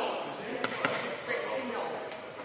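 Several people talking in a large echoing sports hall, with two sharp knocks close together a little past the middle.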